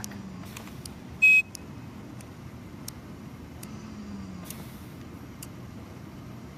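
ReVel transport ventilator giving a single short electronic beep about a second in as its controls are worked, over a steady low hum with a few faint clicks.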